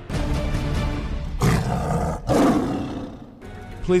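Three loud animal roars in a row, each about a second long, over background music.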